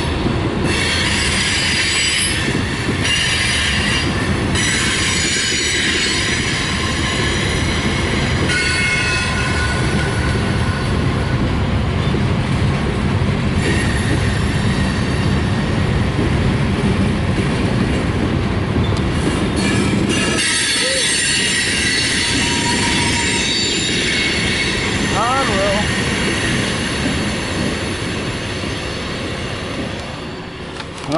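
A mixed freight train's cars rolling past at close range: a steady rumble of wheels on rail with high-pitched squealing from the wheels over it. The low rumble falls away about two-thirds of the way through while the squeal carries on.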